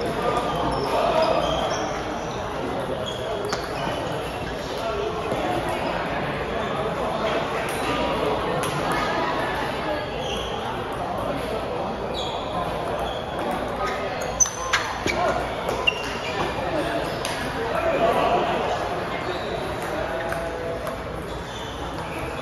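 Table tennis ball clicking off paddles and the table during play, with a quick run of sharp knocks about two-thirds of the way through, over steady background chatter.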